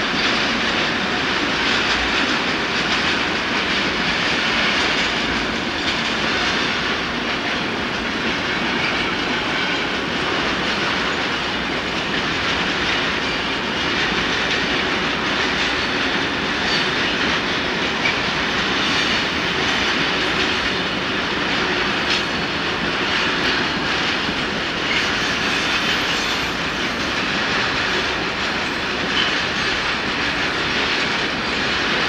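A long freight train of open goods wagons rolling past: a steady noise of steel wheels on rail, with scattered clicks over the rail joints.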